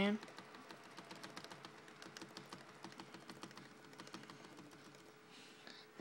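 Laptop keyboard's 0 key being tapped rapidly over and over, a quick run of light plastic clicks, to call up the factory-recovery option while the laptop boots.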